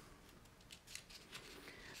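Near silence, with a few faint clicks and rustles from hands handling the paper pages of a comic book.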